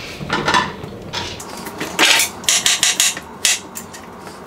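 Kitchen knife chopping zucchini, the blade knocking sharply on the cutting surface: a few scattered cuts, then a quick run of about four a second in the second half.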